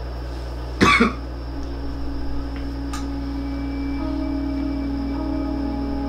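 A single short cough about a second in, then a low ambient music drone of held, sustained tones that swell slightly, over a steady low hum.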